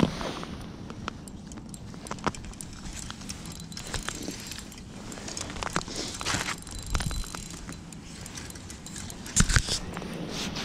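Irregular light knocks, scuffs and rustling of handling noise on the ice: boots, clothing and fishing gear being moved while playing a hooked fish, with a louder cluster of knocks near the end.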